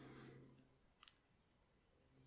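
Near silence: faint room tone, with a soft sound in the first half-second and a few faint clicks about a second in.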